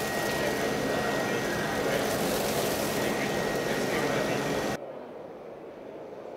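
Neato Botvac D7 Connected robot vacuum running at close range, a steady loud whir of suction and brushes with a thin constant whine. It cuts off suddenly about a second before the end, leaving a much quieter background with voices.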